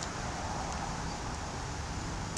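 Steady outdoor background noise: an even, low-level hiss and rumble with no distinct events.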